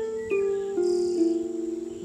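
Harp music: about four plucked notes in turn, each ringing on under the next. A steady thin high tone runs above them.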